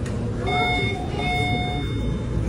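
Electronic beeper sounding two long, steady beeps, the second longer, over background hum and people talking.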